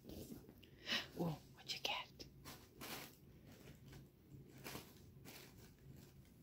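Faint, scattered crinkling and rustling of tissue paper and cardboard as a cat digs in a box and drags a catnip toy out onto the carpet.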